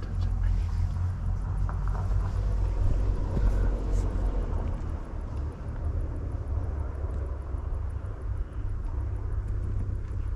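Low, uneven rumble of wind buffeting the camera microphone outdoors, with faint rustling over it.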